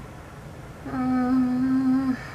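A woman hums one steady, level note for a little over a second, starting about a second in, over a faint steady low room hum.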